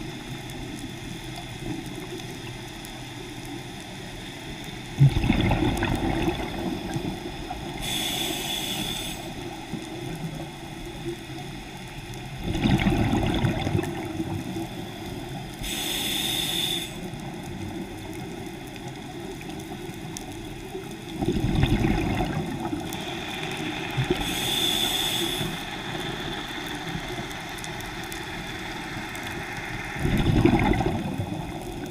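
Scuba diver breathing through a regulator, heard through the underwater camera housing. Each breath has a short hiss as the demand valve opens on the inhale, then a few seconds later a low rumble of exhaled bubbles, repeating about every eight seconds.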